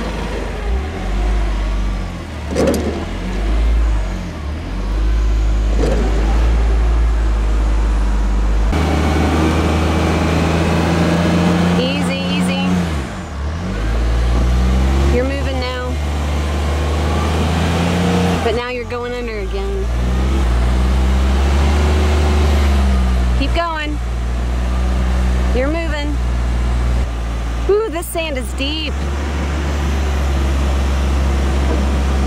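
Ford Transit van's engine revving hard and held at high revs while its wheels spin in deep sand: the van is stuck and trying to drive out. The engine note steps up about nine seconds in, and short shouts come over it now and then.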